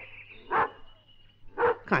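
A dog barking twice, two short barks about a second apart.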